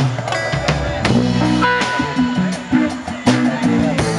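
Live jam band playing an instrumental passage on drum kit, bass, electric guitar and acoustic guitar.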